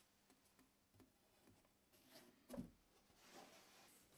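Mostly near silence, with a few faint taps of MDF pieces being handled and one soft thud about two and a half seconds in as an MDF panel is set into the rebate of an MDF frame.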